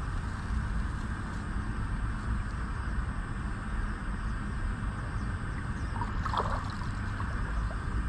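Steady rushing and sloshing of shallow river water around a wading man, with one short call about six seconds in.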